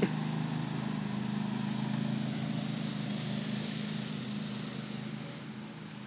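Riding lawn mower's engine running at a steady pitch, growing fainter as the mower drives away.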